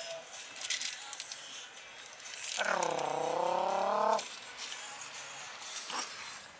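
A person's voice making one long drawn-out sound a little over two and a half seconds in. It dips and then rises in pitch and lasts about a second and a half. Before it there are faint scattered clicks.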